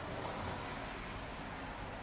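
Steady outdoor background noise: a faint, even rush with no distinct events.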